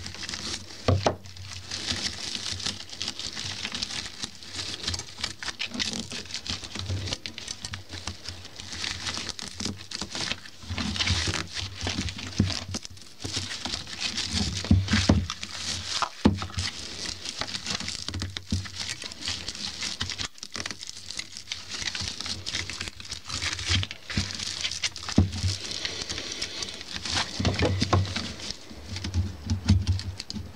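Stiff bristles of a flat polypropylene broom rustling and crackling under gloved hands as copper wire is worked through and around them, a continuous scratchy rustle broken by many small irregular clicks.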